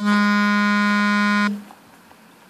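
A loud, steady buzzing tone of one pitch that starts abruptly and cuts off suddenly after about a second and a half.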